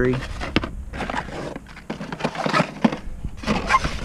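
Carded die-cast toy cars in plastic blister packs being handled and shuffled through on a display rack: scattered sharp plastic clicks and crinkles.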